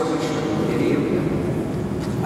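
Pipe organ holding a sustained chord, with a voice over it.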